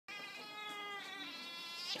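A cat yowling: one long, drawn-out wail that holds its pitch and then rises near the end.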